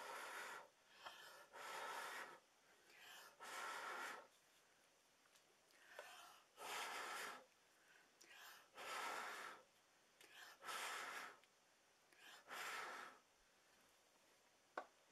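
Faint, regular breathing close to the microphone: a short soft intake followed by a longer breath out, repeating about every two seconds.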